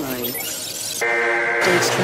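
Dark electronic midtempo techno track: sliding pitched synth lines over a crashing, shattering noise effect, then a sustained bright chord comes in about a second in.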